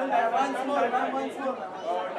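Several people talking at once: crowd chatter with no single clear speaker.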